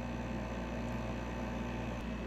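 Steady background hum and hiss with no distinct event.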